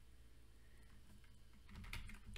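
Faint keystrokes on a computer keyboard, a few scattered clicks over a low steady hum.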